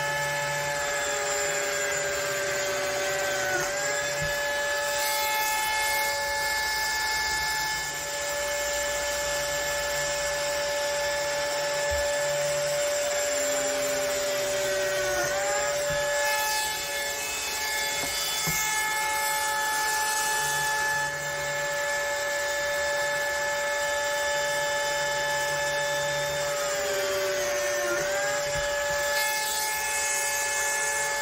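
Lamello Zeta P2 biscuit joiner running with a steady whine, its pitch dipping briefly three times about twelve seconds apart as the cutter plunges into the mitred 19 mm board to mill slots for P-System connectors. A dust extractor runs with it.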